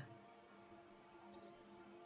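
Near silence: faint room tone with a low steady hum, and one faint computer mouse click a little past halfway.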